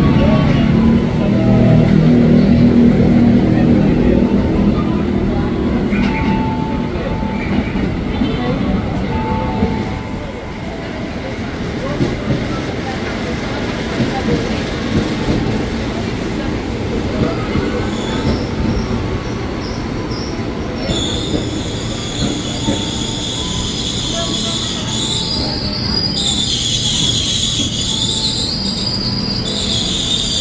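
An ex-JR 205 series electric commuter train arriving at a station platform. It rumbles heavily as it comes in, then rolls past with a run of wheel clicks over the rail joints. In the last third a loud, high, wavering squeal sets in as it brakes to a stop.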